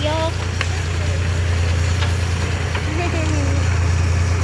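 The engine of the vehicle towing a hayride wagon, running steadily with a low drone. A voice speaks briefly at the start and again about three seconds in.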